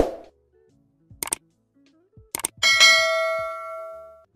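Subscribe-button animation sound effects: a sharp pop, then two pairs of quick clicks, then a bright bell ding about two and a half seconds in that rings out and fades near the end.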